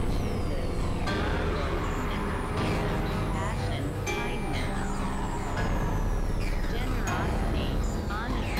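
Experimental electronic synthesizer noise music: layered drones over a steady low rumble. Many pitched sweeps glide downward, a new one about every second.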